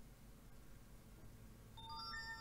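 Room near silence, then near the end a tablet's notification chime of several steady tones sounding together, as a Bluetooth pairing request pops up on its screen.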